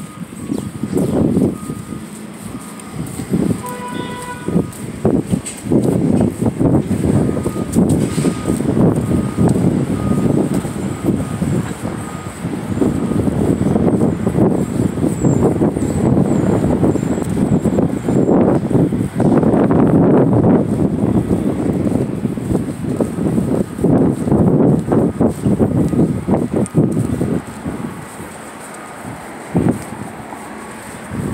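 Loud, uneven rumbling outdoor noise on a handheld phone microphone, with a faint high beeping repeating in stretches.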